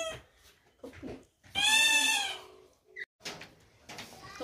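A baby's high-pitched squeal: one call that rises and then falls in pitch, lasting under a second, about a second and a half in.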